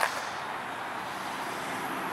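Steady, even hiss of outdoor background noise, with one sharp click right at the start.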